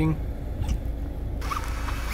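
Mazda MX-5 RF running at low speed down the street, heard as a low steady rumble with a faint hum.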